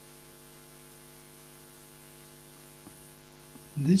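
Faint, steady electrical mains hum with a few higher overtones that hold one unchanging pitch. A man's voice starts right at the end.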